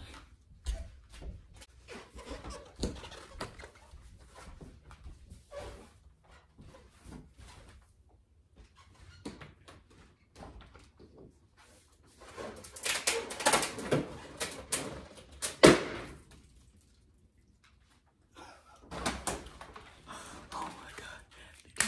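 A confetti-filled balloon bursting: one sharp, loud bang about three-quarters of the way in, the loudest sound, after several seconds of scattered knocks and clatter.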